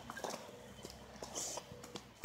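Faint handling noise from a hand-held camera held close: scattered light clicks and rustles, with a brief soft hiss about two-thirds of the way through.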